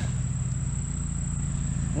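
Steady high-pitched insect chorus in summer brush, one unbroken shrill tone, over a steady low rumble.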